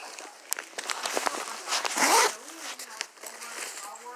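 Zipper on a fabric diaper bag being pulled, with one louder rasp about two seconds in and a few small clicks of handling around it.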